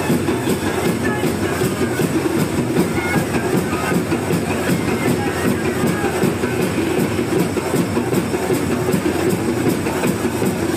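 Steady, loud din of a packed crowd mixed with music.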